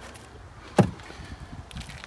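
A single sharp knock a little under a second in, over faint background noise.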